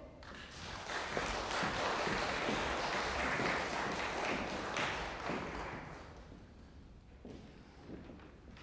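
Audience applause that starts just after the announcement, holds steady, then dies away about six seconds in, followed by a couple of faint thuds near the end.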